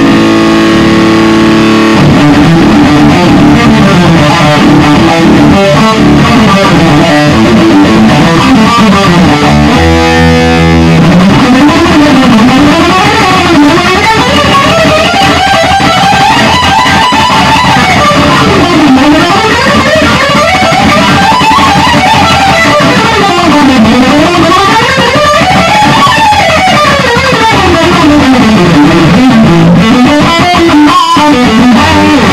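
Solid-body electric guitar with heavy distortion playing a solo. Fast runs climb and fall up and down the neck, broken by a briefly held chord about ten seconds in.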